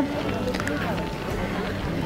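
Faint background voices of people talking outdoors, over a steady low hum.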